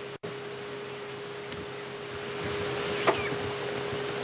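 A steady single-pitched hum over a background hiss, with a brief cut-out of the sound just after the start and one short rising chirp about three seconds in.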